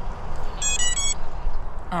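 FPV quadcopter's 4-in-1 ESC (HAKRC 8B45A) playing its power-up tones through the motors on battery connection: a quick run of three short beeps. They are the sign that the ESC is still alive after the crash.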